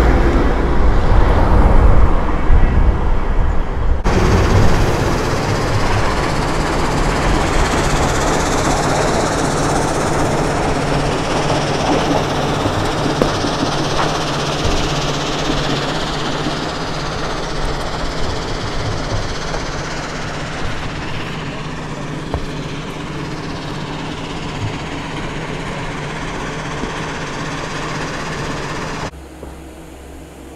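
A passenger bus driving past close by, its engine loud and low for the first few seconds. It is followed by a steady rumbling noise with a faint low hum.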